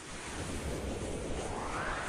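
Rising whoosh sound effect for an animated logo intro: a swelling rush of noise that climbs steadily in pitch.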